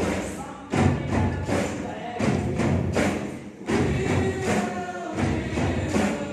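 Many drum kits played together by a drum ensemble, loud hits in repeated phrases, over a song with singing.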